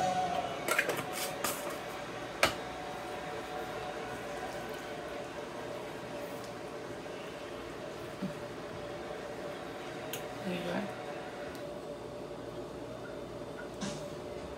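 A few sharp clicks of a utensil against a nonstick frying pan in the first few seconds, then quieter sounds of a silicone spatula stirring a simmering sauce, over a steady background hum.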